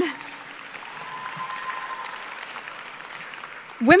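Audience applause, an even steady clatter of clapping, dying away just before the speaker's voice returns near the end.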